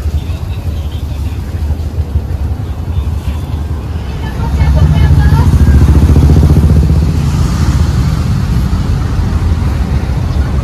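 A motor vehicle engine running close by, a low rumble that grows louder about four and a half seconds in and eases off again after about seven seconds, over street voices.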